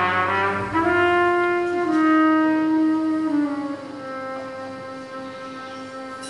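Jazz trumpet holding long, slow notes over sustained piano chords. The melody steps down in pitch and grows quieter in the second half.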